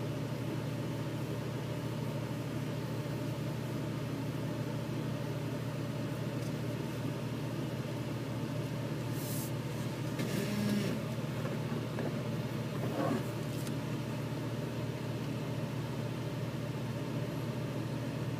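Vehicle engine running steadily at low trail-crawling speed, heard from inside the cab as a steady low drone, with a few short knocks and rattles about halfway through.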